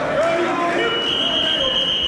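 A long, high, steady signal tone starts a little under a second in and holds, over voices in a gym.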